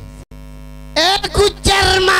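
Steady electrical mains hum from the stage's microphone and PA system, a buzz of many even tones, after a brief dropout near the start. About a second in, a loud voice comes in through the microphones over the hum.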